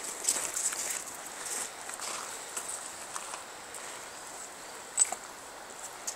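Soft footsteps and scuffs on riverbank gravel and stones, with one sharp click about five seconds in, over a faint steady hiss.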